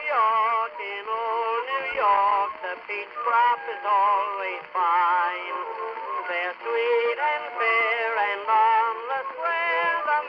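Vintage early-1900s recording of a male singer with accompaniment. The voice is sung with a wide vibrato, and the sound is thin, with no high treble.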